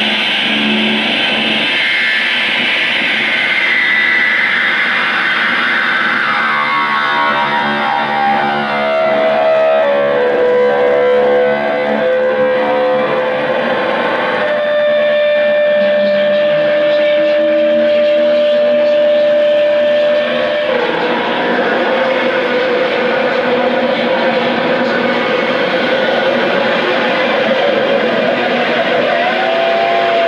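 Two electric guitars played through effects pedals in a distorted, improvised noise piece. A dense wash of sound with pitches sliding downward over the first ten seconds gives way to a single held high tone about halfway through, then to a lower steady drone, with a wavering tone near the end.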